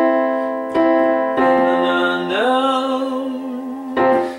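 Casio Privia digital piano playing sustained block chords, struck three times in the first second and a half and left ringing. In the second half a man's voice slides up into a held, wavering sung note over the chord.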